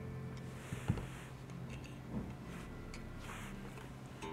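Faint ticks and clicks of a screwdriver working an electric guitar's bridge saddle screw, moving the saddles forward to correct flat intonation, over a low steady hum.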